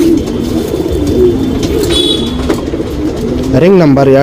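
Several domestic pigeons cooing, a continuous overlapping murmur of low coos.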